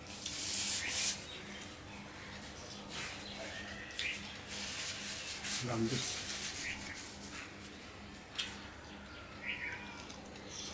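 A paper tissue rubbed and wiped across the face, loudest in the first second, then softer rubbing with a few small clicks. A brief low hum sounds about halfway through.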